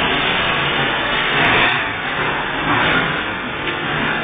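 Steady, loud mechanical noise from a running hydraulic water-bulging press and its pump unit, with no distinct strokes or impacts.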